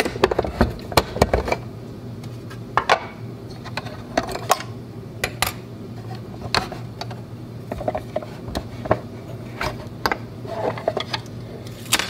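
Hard plastic parts of a LAB-BOX film developing tank clicking and clattering as its lid is taken off and the film reel and other pieces are lifted out and set down on the countertop. Irregular sharp clicks and knocks come throughout, with short pauses between.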